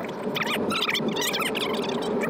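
High-pitched, squeaky chattering like voices sped up into chipmunk gibberish: an edited fast-forward effect over the ordering.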